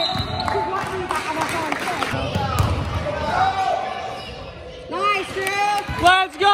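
Basketball bouncing on a hardwood gym floor, with voices and crowd chatter around it.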